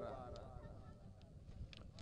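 A quiet pause in the commentary: a faint low rumble, with the tail of a voice fading away at the start and a couple of faint clicks.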